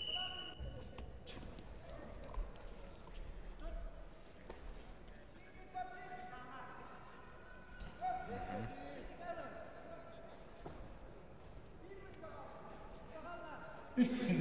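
Wrestlers' feet thudding on the mat, with men's voices calling out from around the mat, most in the middle and near the end.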